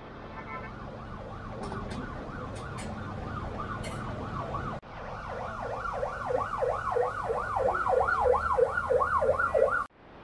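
Electronic siren yelping, its pitch sweeping rapidly up and down about three to four times a second, faint at first and much louder after an abrupt cut about five seconds in, over a low steady rumble.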